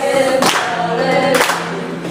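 A small group of people singing a song together unaccompanied, with a sharp hand clap roughly once a second.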